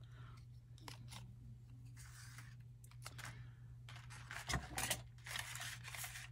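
Quiet rustling and light crinkling of paper die-cuts and a sticker sheet being handled on a craft mat, with soft clicks and taps; the handling is busiest about two thirds of the way in.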